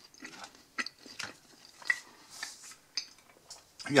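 Close-up chewing of baguette and creamy meat salad: a handful of soft, wet mouth clicks and smacks, spaced irregularly.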